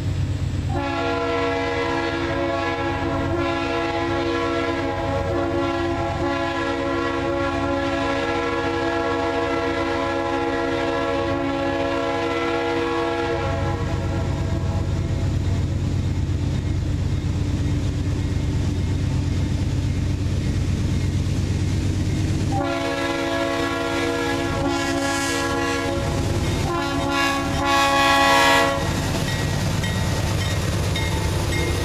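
Norfolk Southern GE D8-40CW locomotive 8381's RS3L three-chime air horn sounding one very long blast of about twelve seconds, then after a pause a long blast and a shorter one, the last the loudest as the locomotive nears. A steady diesel rumble from the approaching coal train runs beneath.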